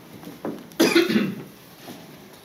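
A person coughs once, a short sharp cough about a second in, with a soft tap just before it.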